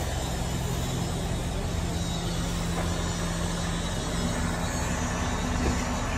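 A police patrol car idling close by: a steady low engine hum under a continuous wash of noise.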